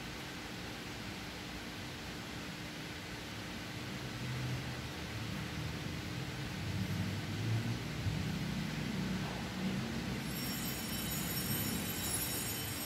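Steady background hiss with a faint constant hum, joined about four seconds in by an irregular low rumble that swells and fades.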